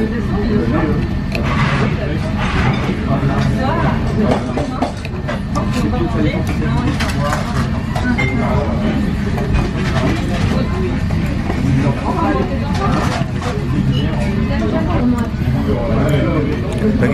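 Steady background chatter of many diners talking in a busy restaurant dining room, over a low steady hum.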